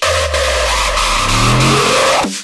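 Hardcore electronic music in a beatless build-up: a sustained low synth tone under a hiss, with a stacked synth sweep rising steadily in pitch through the second half.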